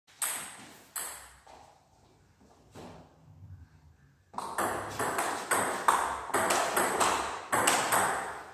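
Table tennis rally: a celluloid-type ball struck by rubber paddles and bouncing on the table, each hit a sharp tick with a ringing echo from the hall. A few scattered hits come first, then after a quieter stretch a steady exchange of two or three hits a second begins about four seconds in.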